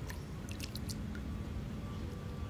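Light splashing of pool water around dangling feet, with a few brief wet splashes in the first second over a steady low rumble.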